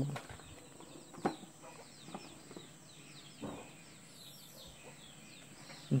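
Faint outdoor ambience: many small bird chirps with a steady high insect drone, and a few soft clicks.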